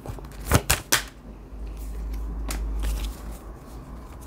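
A deck of oracle cards shuffled by hand, the cards slapping and riffling against each other, with a few sharp snaps about half a second to a second in, then softer rustling.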